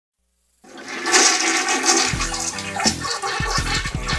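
Toilet being flushed: water rushes into the bowl and swirls, starting about half a second in. Music with a steady bass beat comes in over the flush about two seconds in.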